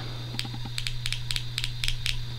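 Ruger New Vaquero single-action revolver's mechanism clicking as the gun is handled: a series of small metal clicks, several in quick pairs, over a steady low hum.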